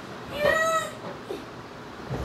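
A single high-pitched cry from a young child, one drawn-out note lasting about half a second.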